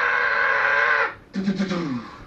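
A voice imitating a horn: one long held nasal "toot" lasting over a second, then after a short break a lower note that slides down in pitch.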